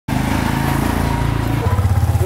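Small motorbike engine running as the bike rides along the street, its sound changing to a steadier low hum about one and a half seconds in.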